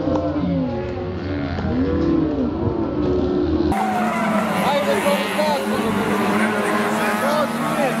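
Small racing hatchbacks' engines revving up and falling back in overlapping swells as the cars take a corner. Just under four seconds in, the sound cuts abruptly to a brighter recording: a steady engine drone with voices and many short squeals.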